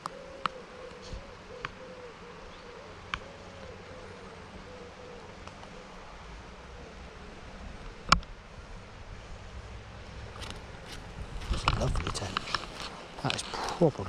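A flying insect buzzing close to the microphone, its pitch wavering up and down through the first half. There are a few faint clicks and a sharp click about eight seconds in, then rustling and knocking near the end as the landing net is handled.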